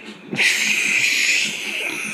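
A man's stifled laugh, let out as one long hissing breath through his teeth.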